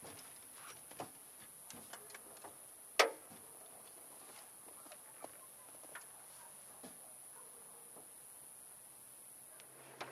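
Scattered light knocks and clicks of a man shifting about in a small fishing boat and settling into its seat beside the rods, with one sharper knock about three seconds in, over a faint steady high hiss.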